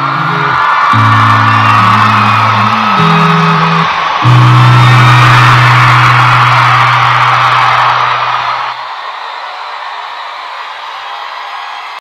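Closing bars of a live pop song, held bass notes under an audience whooping and cheering. The music stops about nine seconds in, and the quieter cheering carries on.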